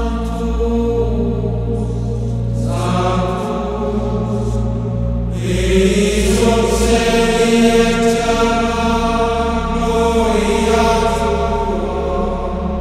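Gregorian-style chant: sung vocal music of long held notes over a steady low drone, with new phrases entering about three and five seconds in.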